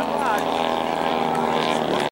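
A steady engine drone holding one pitch, with people talking over it near the start.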